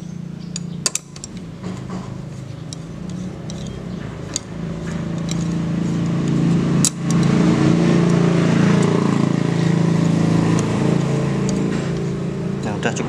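A motor vehicle engine running steadily, swelling louder about halfway through, with a few sharp metallic clicks of hand tools on top.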